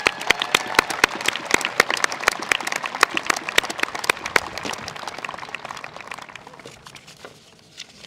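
Audience applauding: many hand claps at once, which thin out and fade away over the second half.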